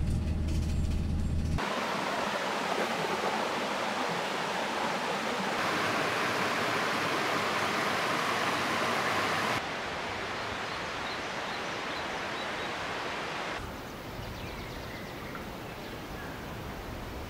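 Rushing water of a small cascade, a steady even roar, inside a run of nature ambience clips that cut abruptly every few seconds. It opens with a brief low hum, and the water gives way about ten seconds in to quieter outdoor ambience with a few faint high chirps.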